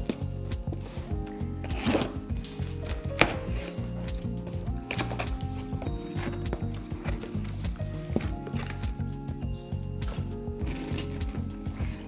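Soft background music with sustained notes, over the scrapes, rustles and clicks of a cardboard box being opened: scissors cutting through packing tape, then the cardboard flaps pulled open. A sharp click about three seconds in is the loudest sound.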